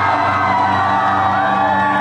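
Live rock band playing loud and steady: electric guitar, bass guitar and drums, with the chords held and ringing on.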